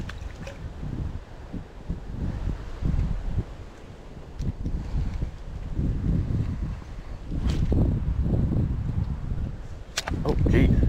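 Wind buffeting the microphone: a gusting low rumble that swells and fades, with a couple of faint clicks from handling the line and rod.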